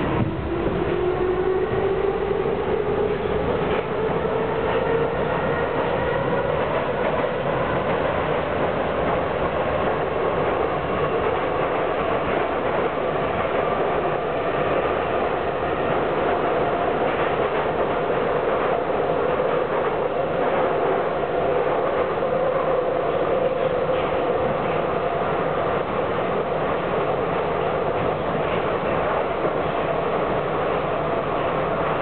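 Budapest metro train heard from inside the car: a motor whine climbs in pitch as the train gathers speed over the first several seconds, then holds steady over a constant rumble of wheels on the rails.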